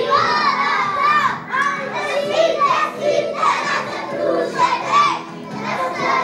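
A group of young children's voices, many at once, loud and overlapping in shouts and calls.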